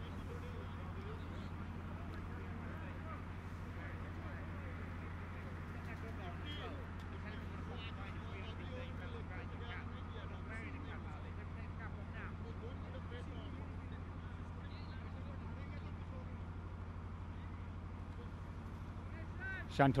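Steady low hum with faint, distant voices of players calling on the field.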